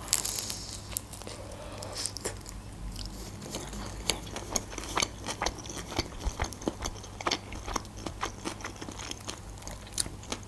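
A bite into a homemade shawarma wrapped in lavash, then chewing, with many small irregular clicks and crackles from the mouth.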